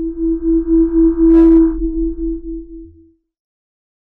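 Electronic logo sting: one steady humming tone that wavers in loudness a few times a second over a low rumble. It swells to its loudest about a second and a half in, then fades out by about three seconds.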